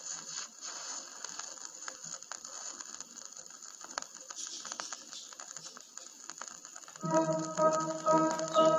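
Vinyl LP surface noise in the silent groove between tracks: a faint hiss with scattered clicks and crackles. About seven seconds in, the next song begins with sustained pitched notes.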